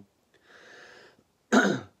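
A man clears his throat once, a short, loud, cough-like burst near the end, after a fainter hiss.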